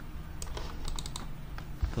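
A cluster of quick, light computer-key clicks between about half a second and a second and a quarter in, over a faint steady low hum.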